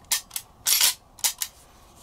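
CZ 75 pistol's freshly cleaned and oiled steel action being worked in a function check: a quick series of sharp metal clicks and clacks as the slide and hammer are cycled, the longest clack about two-thirds of a second in, two quick clicks past the middle.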